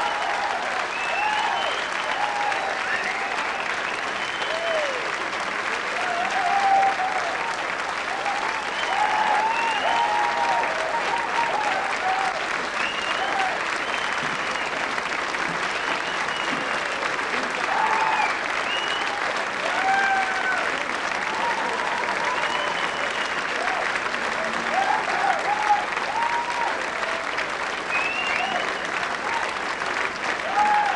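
Concert audience applauding steadily at the end of a song, with short cheers and whistles scattered through it.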